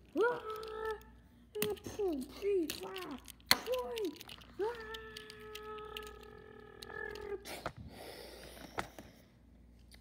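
A high voice making wordless play sound effects for toy cars: a few short swooping cries, then one long held note, with several sharp knocks as the toy cars are pushed and bumped by hand.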